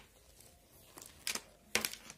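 Light plastic vacuum-cleaner parts clacking as they are handled and set down on a concrete floor: three short separate knocks, the loudest near the end.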